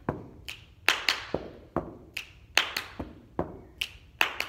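Body percussion: a repeating pattern of finger snaps, hand claps and foot stomps on a carpeted floor, a quick run of about a dozen sharp hits.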